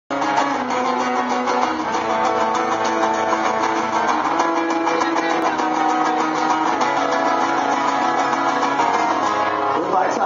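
Two acoustic guitars strummed together in a steady rhythm, playing a song live.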